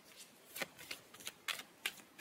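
Faint handling of tarot cards: a few soft, scattered flicks and clicks, irregularly spaced.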